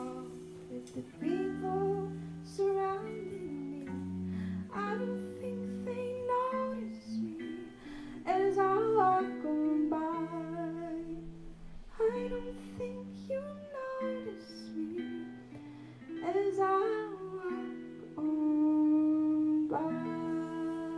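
Live band playing a song: a woman singing over two clean electric guitars, with light drums and cymbals. Near the end a louder sung note is held over a sustained chord.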